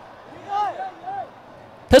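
Low pitch-side ambience of a football match with two short distant shouts. A male commentator starts speaking right at the end.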